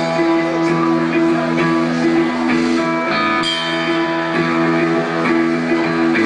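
A rock band playing live, led by an electric guitar holding sustained chords that change about once a second over a steady low bass line.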